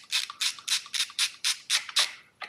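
Ratchet wrench clicking in a quick, even run, about six or seven clicks a second, as the spark plug is being loosened from the cylinder head of a two-stroke moped engine.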